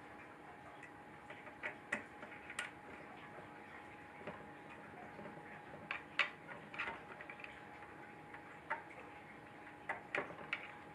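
Scattered small clicks and taps of a hand tool working at recessed hex screws inside a 3D printer's controller case, the sharpest few about six seconds in, over a faint steady hum.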